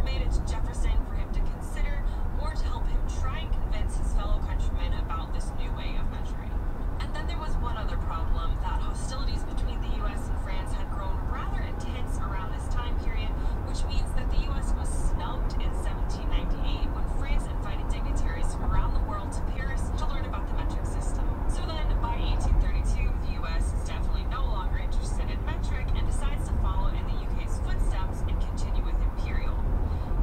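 Steady road and engine rumble inside a car's cabin while driving at highway speed, with muffled talk under it.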